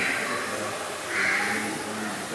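Bird calls: two short, harsh caws, one right at the start and one about a second later, over a low steady hum.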